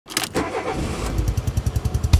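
Small car engine starting as an animation sound effect: a few quick clicks of cranking, then the engine catches and settles into a low, fast-pulsing idle.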